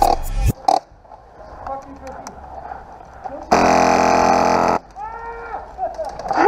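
A person lets out a long, loud burp lasting a little over a second, starting about three and a half seconds in.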